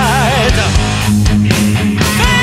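Hard rock recording with electric guitar, bass and drums. A held note with vibrato slides down and fades out in the first half second, then the band plays on with steady drum hits and bass.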